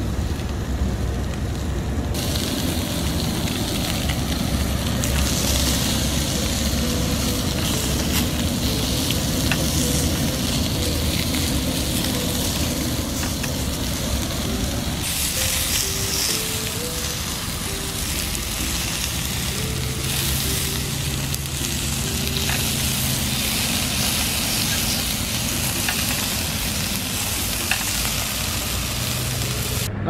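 Giant snakehead fillets sizzling steadily as they fry in a pan on a portable gas camp stove, with a few light taps of chopsticks turning them.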